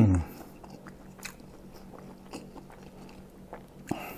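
A person chewing a mouthful of tofu from a rujak, picked up close by a lapel microphone: soft, quiet chewing with a few small clicks of the mouth.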